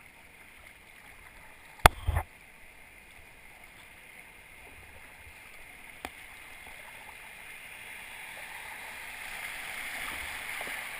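Rushing water of a river rapid, a steady noise that grows gradually louder as the inflatable kayak runs into the whitewater. A sharp knock comes about two seconds in and a smaller one about six seconds in.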